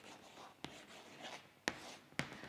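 Chalk writing on a chalkboard: faint scratching strokes, with two sharp ticks of the chalk on the board, about half a second and a second and a half in, the second one louder.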